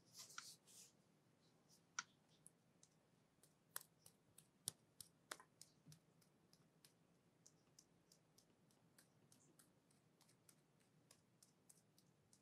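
Hands rubbing cream over skin, with a short rubbing hiss at the start and then soft sticky clicks and crackles at irregular intervals.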